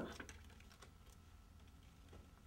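Near silence with faint, scattered light clicks and rustles of a plastic-wrapped CPR-D pad package being handled.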